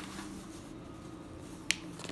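Paper notebook page snapping once as it is flipped over, a single sharp click near the end, over a faint steady low hum.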